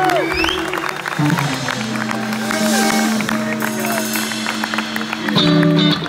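Live band music led by electric guitars: notes bend up and back down over sustained low notes, with a change of chord about five and a half seconds in.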